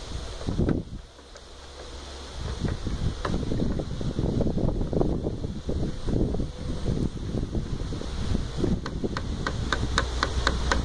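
Wooden spoon stirring a thick, syrupy apple wine must in a plastic bucket: irregular sloshing and swishing strokes, with wind buffeting the microphone. A quick run of light clicks starts near the end.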